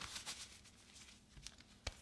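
Faint rustling of a knit cut-resistant work glove being pulled on and handled, with one sharp tap near the end.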